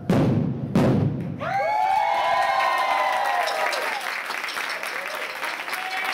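Set of five tuned marching bass drums struck together twice, the closing hits of the piece. About a second and a half in, an audience starts cheering and applauding.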